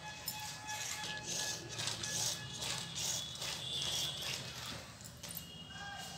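A battery-operated musical doll toy playing a thin electronic tune, with light repeated clicking from its mechanism.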